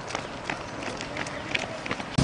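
Footsteps of a group of runners on a paved road, many short, irregular, overlapping footfalls.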